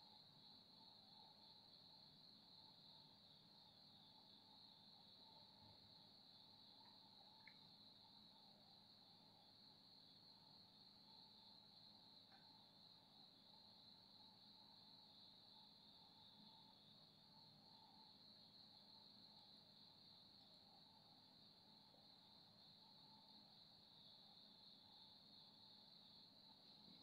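Near silence: faint room tone with a steady high-pitched drone and a low hum underneath.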